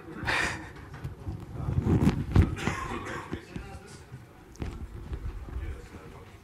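Indistinct low voices and room noise, with scattered rustles and a few dull knocks, the loudest of them around two seconds in.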